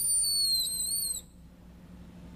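A high-pitched whistling squeal lasts about a second, wavering slightly in pitch, then stops abruptly. A low steady hum runs underneath.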